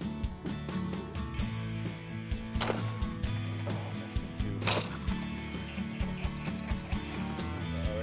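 Background music with a steady low bass line, broken by two sharp cracks about two seconds apart, one a third of the way in and one just past the middle.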